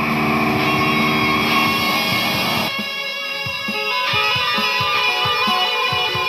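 Electric guitar played through a multi-effects unit: dense, held, effects-laden tones, thinning about three seconds in to short picked low notes under a lingering higher wash.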